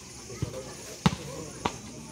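Volleyball being struck by players' hands during a rally: three sharp hits, the loudest about a second in. Spectators' voices run underneath.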